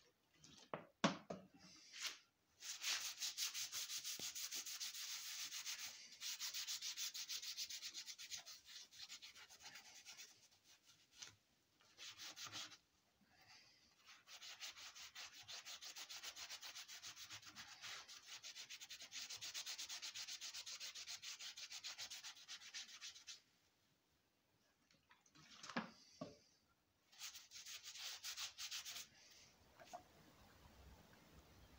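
Hand scrubbing down the cast-iron six-cylinder engine block of an FJ Holden to prepare its surface for paint: fast, steady rubbing strokes in long runs, with short pauses and a couple of knocks near the end.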